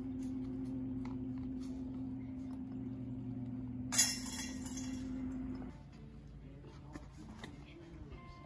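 A disc golf putt hits the metal chains of a basket with a sharp, loud jingle about four seconds in. Under it runs a steady low hum that stops a couple of seconds later.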